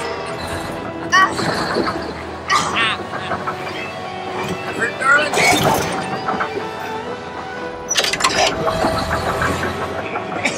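Film soundtrack: music playing under voices calling out, with a sharp hit about eight seconds in.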